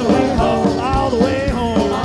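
Zydeco band playing live, in an instrumental passage without singing: a steady drum beat under a lead melody that slides up and down in pitch.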